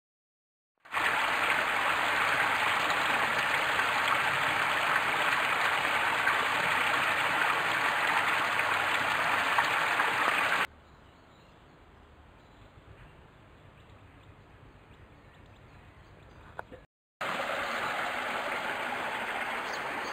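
Steady rush of water pouring from culvert pipes into a shallow chalk stream. It starts about a second in and cuts off abruptly about halfway through. After several seconds of much fainter water sound, the rush of shallow stream water over gravel returns near the end.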